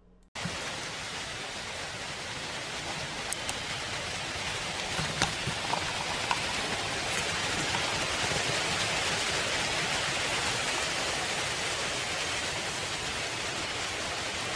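Steady rushing hiss of strong wind blowing through the woods, with a few faint ticks scattered through it.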